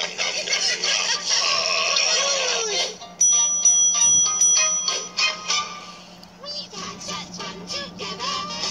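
Children's TV puppet show audio picked up by a phone's microphone from a TV speaker: character voices and music, then a front-desk service bell rung rapidly several times a little over three seconds in, followed by more singing and music.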